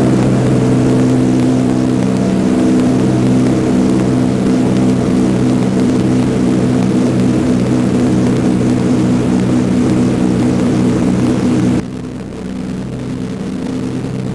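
Twin piston engines of a propeller airliner droning steadily in flight. About twelve seconds in it drops suddenly to a quieter, duller drone, as heard from inside the cabin.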